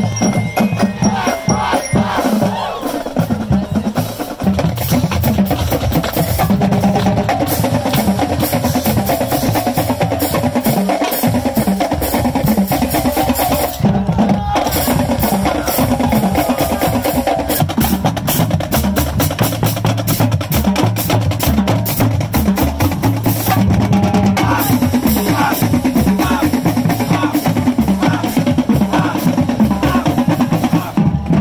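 Marching band playing: a drumline beating a steady, driving rhythm under the brass, with sousaphones among the players.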